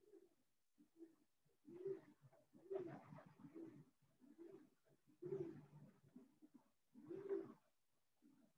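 A pigeon cooing faintly in a repeated series of low, rolling coos, about five phrases in all.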